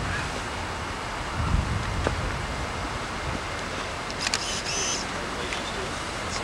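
Open-air ambience on a camcorder microphone: steady hiss, a gust of wind rumble about a second and a half in, and faint distant voices, with a short sharp high sound about four seconds in.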